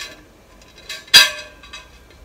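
A large Victorian ceramic meat plate clinking as it is handled and turned over: one sharp clink with a short ring about a second in, with a few fainter clicks around it.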